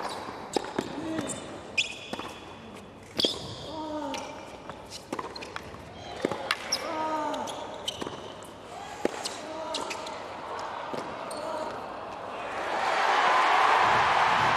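Tennis rally on a hard court: the ball is struck back and forth with sharp hits every second or so, and the players grunt on some shots. Near the end the crowd breaks into loud cheering and applause as the point is won.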